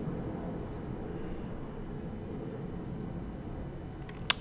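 Steady low background rumble of room tone, with no distinct sounds.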